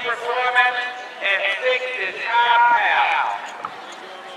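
Speech: voices talking, which fall away about three seconds in, leaving quieter outdoor background.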